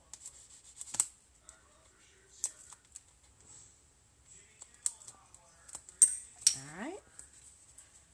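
Handling of cardstock and double-sided adhesive tape: scattered sharp clicks and crinkles as the tape's backing liner is picked and peeled off, the strongest about a second in and again about six seconds in.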